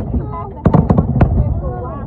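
Aerial fireworks bursting overhead: one sharp bang at the start, then a quick run of about six cracks over roughly half a second.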